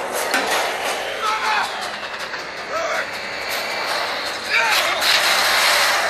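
Action-film soundtrack played loud through the Sony Xperia 1 III's dual front-facing speakers: a continuous din of vehicle engines with brief voices breaking through.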